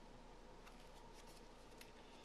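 Near silence: room tone with a few faint, brief rustles of a small paper comic booklet being handled and turned over.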